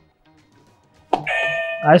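Game-show answer buzzer pressed, giving a sudden electronic tone that is held for under a second, about a second in, over faint music.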